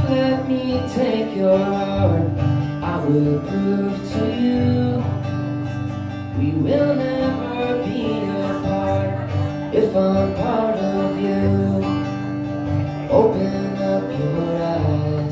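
Acoustic guitar played live with a man singing over it at times.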